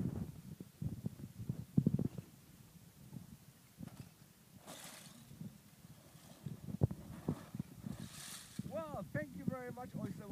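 Oyster shells sliding and clattering out of a tipped plastic bin onto a pile of shells, in two brief rushes, one about halfway and one near the end, with a sharp knock between them.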